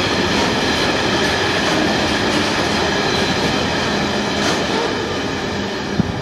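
Freight train hopper wagons rolling past: a steady rumble and clatter of wheels on rail, with faint high ringing tones over it. The sound falls away near the end as the tail of the train goes by.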